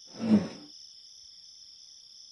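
Faint, steady chirring of crickets at night, with one short murmur from a person's voice, a single falling syllable, about a quarter second in.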